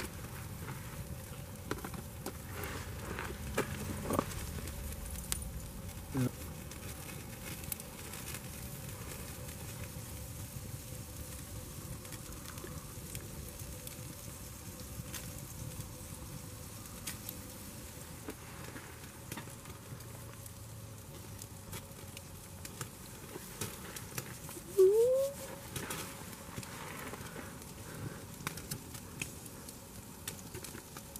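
Steak sizzling on a wire grill over campfire coals, with scattered small crackles and pops from the fire. A brief rising whine near the end is the loudest sound.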